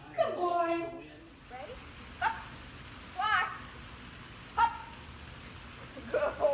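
A drawn-out, high-pitched voice sound in the first second, then three short high-pitched rising calls spaced about a second apart, over a faint low background murmur.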